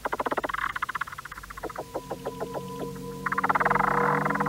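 Orchestral music from a modern opera. Rapidly pulsing repeated notes for the first half second give way to sparser detached notes over held tones, and the music swells into a louder, denser sound near the end.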